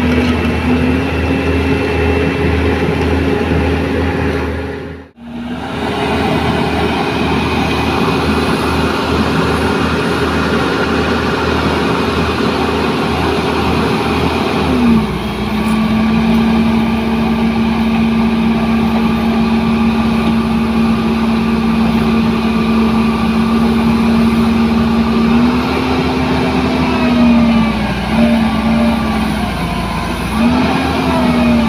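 Diesel engine of a Dynapac CA250 vibratory roller, stuck in mud, running steadily under load. Its pitch drops about halfway through and rises again near the end.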